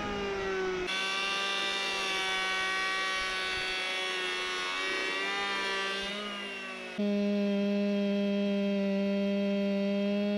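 Handheld electric planer running steadily with a whining motor as it shaves a log. About seven seconds in it gives way to a louder two-stroke chainsaw held at steady high revs.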